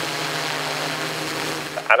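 DJI Inspire 2 quadcopter flying overhead, its propellers and motors making a steady hum. The hum cuts off just before the end, when a man's voice begins.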